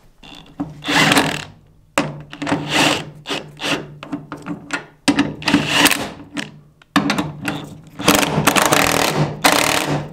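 Cordless impact wrench running bolts into a car's lower control arm mounts, fired in about six bursts of a second or so each with short pauses between, a steady motor hum under the hammering rattle.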